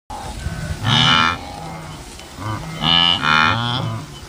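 Blue wildebeest calling: a loud, mooing call about a second in and two more close together near the end, with lower, deeper calls in between.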